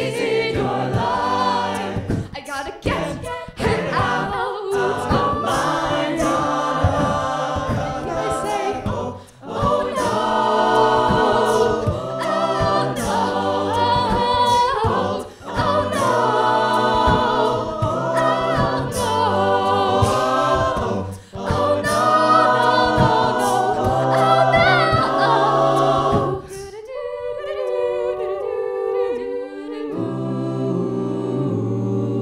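Mixed-voice a cappella group singing a pop song, a female lead over stacked backing harmonies and vocal percussion keeping the beat. About 26 seconds in the beat drops out and the voices thin to soft, sustained chords.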